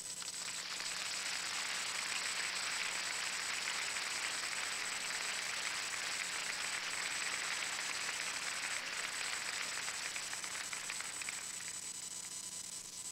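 Audience applauding steadily, thinning out near the end.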